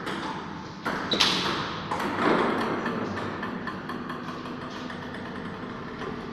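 Table tennis rally: a celluloid ball is struck by rubber-faced bats and bounces on the table, making a few sharp clicks in the first two seconds as the rally ends. A louder, longer noise follows about two seconds in and fades away, echoing in the small room.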